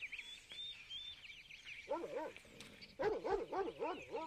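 A dog barking in short yelps: a couple about two seconds in, then a quick run of several in the last second. Faint bird chirping goes on throughout.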